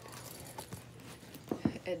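A packed fabric and faux-leather backpack diaper bag being turned by hand on carpet: faint rustling, then two light knocks about a second and a half in.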